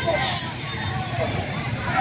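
Several people's voices talking and calling over one another, unclear and overlapping, over a steady low rumble. A brief hiss comes about a quarter of a second in.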